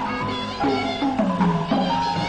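Burmese hsaing waing ensemble playing, with pitched drum strokes that drop in pitch about twice a second under a higher melody.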